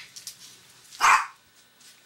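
A dog barks once, about a second in.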